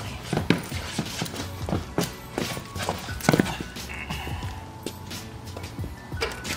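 Irregular knocks and clunks as a heavy aluminum LS short block is handled and set down onto a wooden pallet, the loudest about three seconds in. Background music plays underneath.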